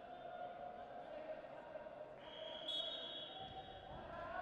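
Faint ambience of a sports hall during a wrestling bout. A steady high-pitched tone runs throughout, and a second high tone joins a little after halfway.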